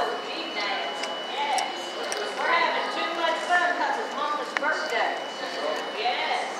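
Background chatter of other diners in a restaurant dining room, quieter than a nearby voice, with a few light clicks near the end.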